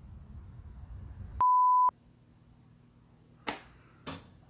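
A single censor bleep: a steady, pure, fairly high beep about half a second long that cuts in and out abruptly, with all other sound muted beneath it. Faint room tone surrounds it, and a brief short sound comes near the end.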